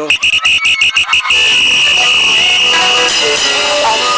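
A shrill, alarm-like electronic tone played over a concert PA. For just over a second it stutters about six times a second, then it is held as one steady tone while backing music comes in under it.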